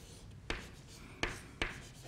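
Chalk on a blackboard: three short, sharp chalk strokes as lines are drawn, the last two close together.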